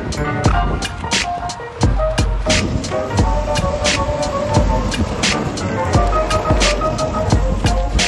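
Lo-fi hip-hop background music with a steady, unhurried drum beat of kick and snare under a melodic line.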